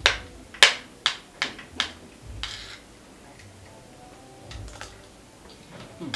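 A metal spoon clinking against a plate while eating: five sharp clinks in the first two seconds, a short scrape, then a few fainter clinks near the end.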